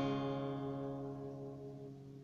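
Acoustic guitar chord left ringing after a strum, fading slowly away with no new strums, in a pause between sung lines of the song.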